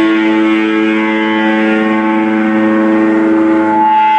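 A distorted electric guitar chord held and left ringing, steady and unbroken with no drums under it, in a live rock performance.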